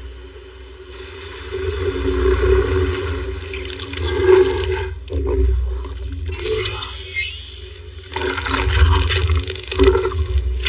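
Film sound-effects mix: a deep low rumble under a rushing, water-like noise that swells in from a low start, with sharper noisy bursts in the second half.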